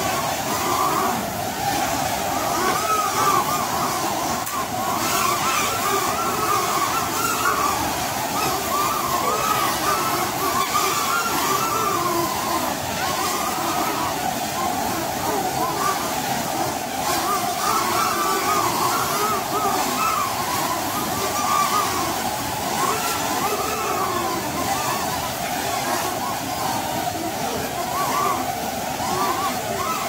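Several small caged quadcopter drones flying at once, their propellers making a steady massed whine whose many pitches waver up and down as the drones speed up, slow and turn.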